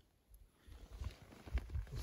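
Faint rustling and a few soft low thumps of a person moving and leaning in close, after a brief near-silent moment at the start.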